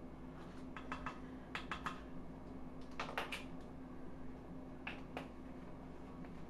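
Plastic measuring spoons clicking and clattering as they are handled, light clicks in small clusters with the sharpest pair about three seconds in, over a faint steady hum.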